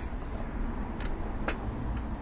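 Two light clicks about half a second apart as a cordless circular saw's base plate and blade guard are set against the wooden sleeper, with the saw switched off. A low steady rumble runs underneath.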